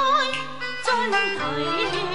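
Cantonese opera (粵曲) singing, a voice with wide vibrato, over traditional Chinese instrumental accompaniment.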